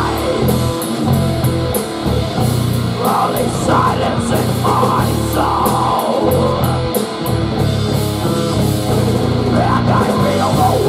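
Heavy metal band playing live: distorted electric guitar and bass playing a chugging riff over a drum kit with cymbal hits, no vocals. The low end drops out for short breaks a few times, giving a stop-start feel.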